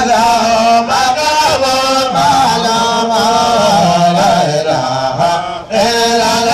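Melodic Islamic devotional chanting, a continuous drawn-out voice line that bends in pitch, breaking off briefly near the end.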